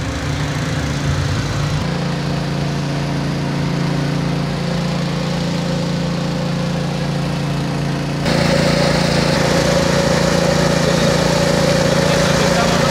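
Small petrol-engine water pump running steadily, pumping water out of a flooded trench. About eight seconds in it grows louder, joined by the rush of water from its outlet hose.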